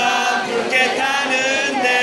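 Crowd of students singing a university cheer song together in unison, holding long notes.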